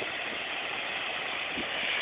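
Steady, even hiss of beach ambience: the wash of small waves on the shore.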